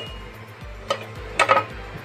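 A lid being set on a cooking pot of dal: a clink right at the start and another short clink or two about a second and a half in, over soft background music.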